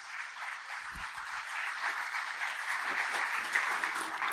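Audience applauding, an even clatter of many hands that grows a little louder.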